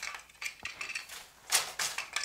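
Wooden floor loom being woven on: soft clicks as the boat shuttle is caught at the edge, then a couple of sharper wooden knocks from the beater and treadles about one and a half seconds in.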